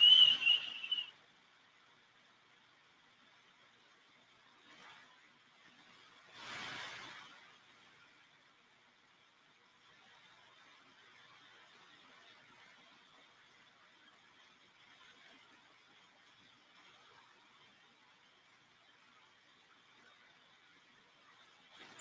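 A woman's brief shushing "shh", a hiss with a whistly edge, lasting about a second at the start. After it comes near silence, broken only by a faint short puff and then a soft breath-like hiss about six to seven seconds in.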